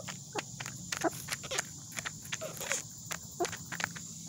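Hens pecking pellets from a red plastic feeder: quick, irregular sharp taps of beaks striking the plastic and the feed, several a second.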